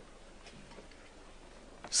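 A pause in a man's speech at a microphone: faint, even room tone of a hall. His voice comes back at the very end.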